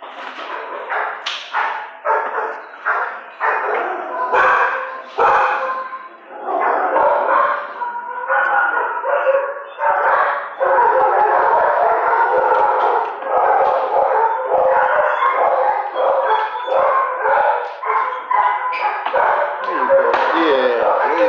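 Dogs barking over and over, the barks coming faster and overlapping into a near-continuous din from about halfway through, with some yips and howls among them.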